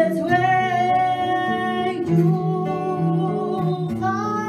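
A woman singing long held notes over an acoustic guitar, a live acoustic duo.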